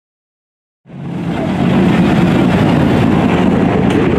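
Rally car's engine running steadily, fading in about a second in.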